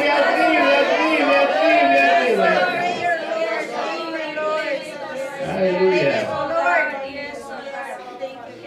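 Several voices praying aloud at once, with one man's voice into a microphone loudest among them; the voices grow quieter near the end.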